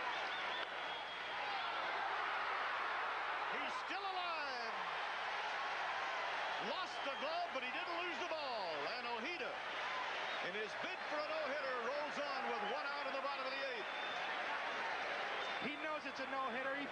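A large ballpark crowd yelling and cheering steadily, many voices overlapping, with individual shouts and whistles rising and falling above the din.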